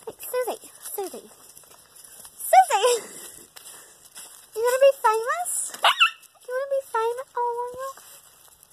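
A dog whining and yelping in short cries that rise and fall in pitch, coming in several bunches. It is being picked up and held against its will.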